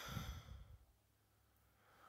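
A person's faint breath out, like a short sigh, in the first moment, then near silence.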